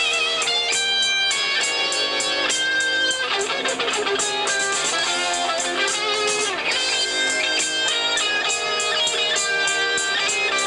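Live rock band playing: electric guitar lines with sustained, bending notes over rhythm guitar, bass and drums keeping a steady cymbal beat.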